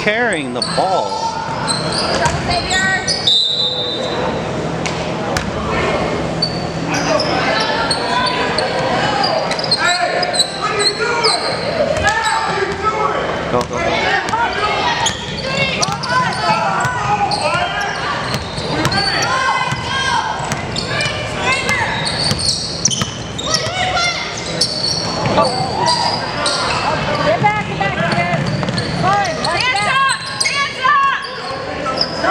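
A basketball bouncing on a hardwood gym floor during play, amid indistinct calls and voices of players and spectators, with many short knocks throughout.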